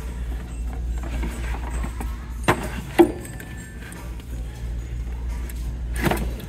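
Wooden crates and a picture frame knocking and scraping against a wire shelf as they are shifted by hand, with two sharp knocks about halfway through. Faint background music and a steady low hum run underneath.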